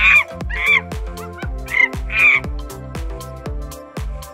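Chimpanzee calls: about five short, high cries in the first two and a half seconds, over background music with a steady beat.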